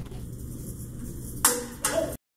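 Two sharp knocks about a second and a half in, less than half a second apart, over a low steady hum.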